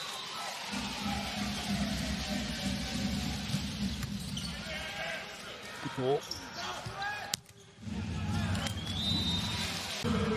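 Indoor volleyball arena: steady crowd noise with the ball's impacts, the ball bouncing on the court and being struck in a rally. A sharp smack comes just after seven seconds in.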